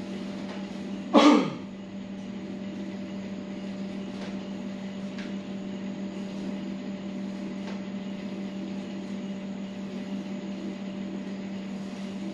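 A person's short loud cry about a second in, falling steeply in pitch, over a steady low hum. After it there is only the hum and a few faint clicks.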